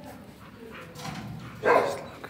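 A dog barks once, a single short, loud bark near the end.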